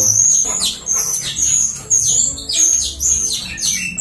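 A small bird chirping over and over, loud, quick high calls that sweep downward, about two or three a second.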